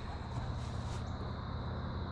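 Steady outdoor background: a low hum with a faint, thin high tone running through it.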